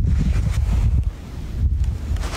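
Wind buffeting a phone's microphone: a loud low rumble that drops away briefly a little after a second in, then comes back.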